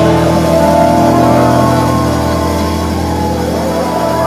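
Live band music: chords held steady over a sustained bass, with a gliding melody line above, the whole slowly getting a little quieter.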